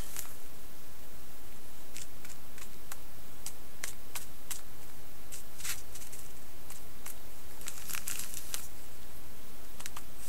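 Scattered short crinkles and rustles of a clear plastic bag of static grass handled in gloved hands while grass is pinched out and pressed down, heard over a steady background hiss.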